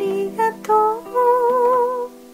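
A song: a voice sings or hums a few short notes, then a long held note with vibrato in the second half, over sustained acoustic guitar chords.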